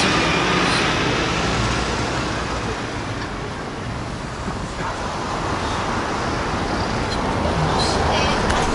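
Wind buffeting an open-air microphone: a steady rushing rumble that eases a little midway and builds again towards the end.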